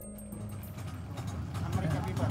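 Background music fading out, giving way to a low rumble with faint voices that grow louder toward the end.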